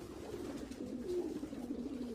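Racing pigeons in the lofts cooing: several low, wavering coos overlapping faintly and continuously.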